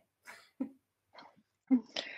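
A woman laughing softly in a few short, breathy bursts, with a sharper, cough-like burst at the end.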